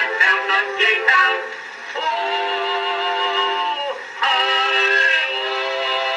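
The closing bars of an early acoustic-era 78 rpm record of a comic duet with orchestra: a quick run of short notes, then two long held final chords, the second coming in about four seconds in. The sound is thin and has no bass.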